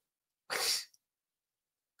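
A woman's single short, hissy puff of breath about half a second in.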